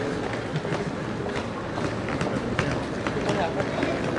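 Busy street ambience: indistinct voices of passers-by and many quick footsteps clicking on paving.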